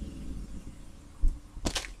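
Handling noise while unboxing: a soft bump a little past a second in, then a brief crinkle near the end as the sleeved art print and box contents are handled, over a faint low hum.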